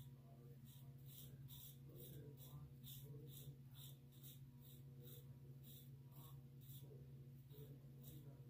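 Faint short scraping strokes, about two a second, of a Gillette Super Adjustable "Black Beauty" double-edge safety razor with a new Derby Premium blade cutting lathered stubble on the upper lip. A steady low hum runs underneath.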